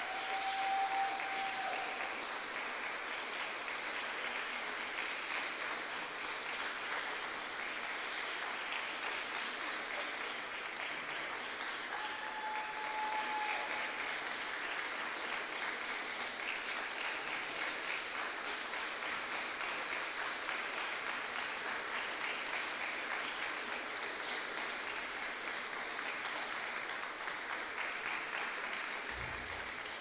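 Audience applauding steadily and without a break. Two short held tones rise over the clapping, once at the start and once about twelve seconds in.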